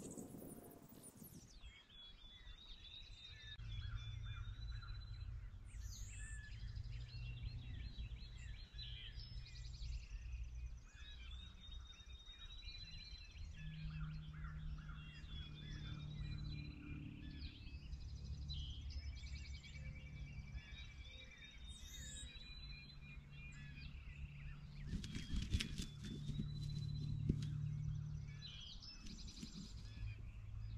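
Songbirds chirping and singing in a continuous chorus over a low steady rumble, with a few sharp knocks near the end.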